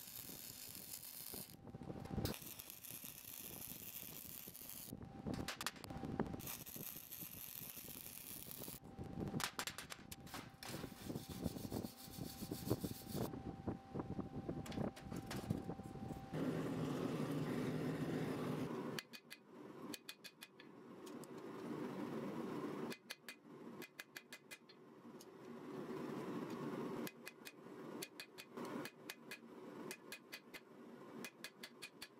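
Electric arc welding crackling and sputtering in several runs with short breaks, tacking the layered steel billet together. After that comes a few seconds of steadier noise, then a stretch of intermittent clicks and knocks.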